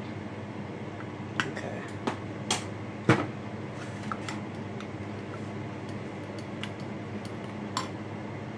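Scattered clinks and knocks of kitchen glassware and a metal spoon as grated Parmesan is mixed in a glass measuring cup, the loudest knock about three seconds in, over a steady low hum.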